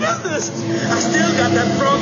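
Voices talking over background music with sustained notes.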